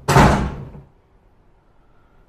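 A door slammed shut once: a single heavy bang that dies away within about a second.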